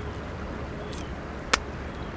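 A single sharp pop about one and a half seconds in: an air bladder on a piece of seaweed squeezed and burst between the fingers, like bubble wrap. Under it is a steady low rumble of wind and shore.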